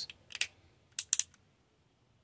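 Small sharp clicks of a Transformers action figure's parts as its arm panels are snapped shut: a short clatter, then three quick clicks about a second in.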